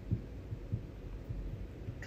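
Soft, irregular low thumps over a steady low rumble, about five or six in two seconds.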